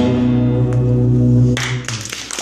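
Live band with acoustic guitar holding a final chord that rings on steadily, then breaks off about one and a half seconds in as audience applause begins.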